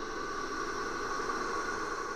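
A quiet gap in the background music: a faint, steady hiss with faint held tones beneath it.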